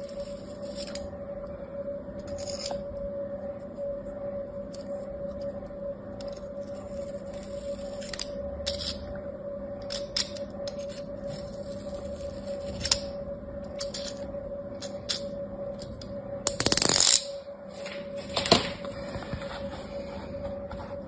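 A metal knife blade scraping across the top of kinetic sand packed in a plastic mold, in a series of short, scratchy strokes. Two louder rustling bursts of sand come near the end. A soft steady musical drone runs underneath.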